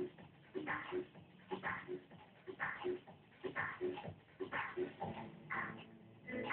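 Container crane machinery working, making a short sound that repeats about once a second.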